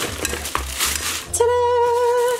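Plastic shopping bags crinkling and small plastic items clattering as they are tipped out and unpacked, with a few clicks. About a second and a half in, a single steady musical note starts and holds.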